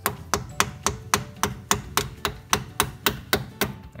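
A steel brake hose retaining clip being tapped into place with a hand tool: a steady run of about fourteen metal taps, roughly four a second, each with a short ring, until the clip seats.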